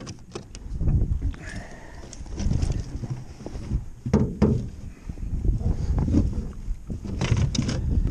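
Landing net holding a freshly caught lake trout being hauled into a boat: irregular knocks, rustling and scrapes of the net and fish against the boat, over a low rumble of handling noise on the microphone.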